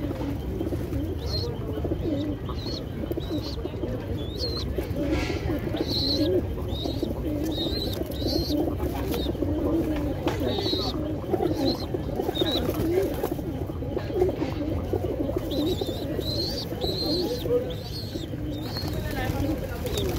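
A flock of feral pigeons cooing, low overlapping coos running on without a break, with short high chirps repeating over them.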